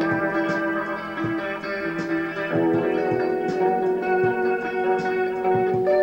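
Instrumental rock: electric guitar picked over sustained, organ-like held chords, with a chord change about two and a half seconds in.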